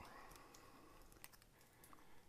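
Near silence: room tone with a few faint clicks from a clear plastic fountain pen being handled.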